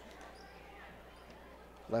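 Faint gym sound of a basketball being dribbled on a hardwood court, over a steady low electrical hum.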